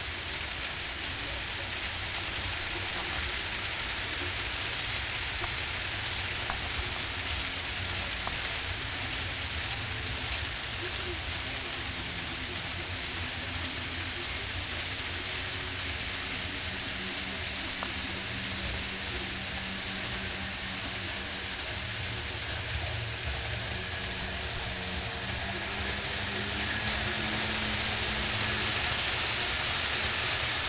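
A steady hiss that grows louder over the last few seconds.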